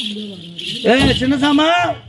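Metal anklet bells on a stage actor's legs jingling as he moves, then a man's loud drawn-out cry whose pitch swoops up and down, lasting about a second.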